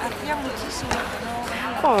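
Background voices talking, with a single dull thump about a second in.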